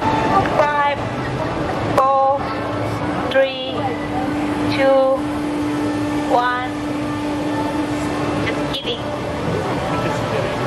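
Several short, high-pitched vocal calls from people, about six in all, over a steady mechanical hum. A low steady tone is held through the middle of the stretch.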